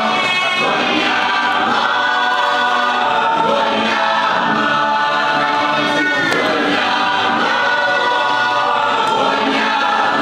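A choir singing gospel music, many voices sustaining and sliding between notes at a steady level.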